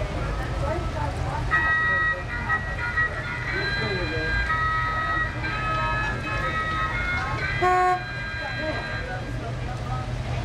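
A vehicle horn sounds one short blast late on. Before it comes a run of high held notes stepping from pitch to pitch, with voices faint in the background.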